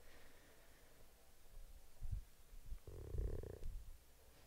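Quiet room tone through a headset microphone with a low rumble, a soft thump about two seconds in, and a soft breath about three seconds in as she stretches.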